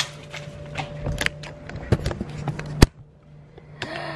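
Handling noise as a box of chocolate-dipped strawberries and the camera are moved: a few scattered clicks and knocks, the sharpest about three seconds in, over a steady low hum.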